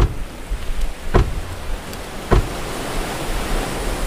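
Steady wash of sea waves, with three sharp knocks about a second apart in its first half.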